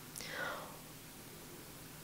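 A woman's short, soft breathy exhale, falling in pitch in the first second, then quiet room tone.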